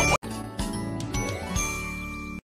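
A tinkling, twinkly chime sound effect over music, with a rising glide past the middle and a brief dropout just after the start.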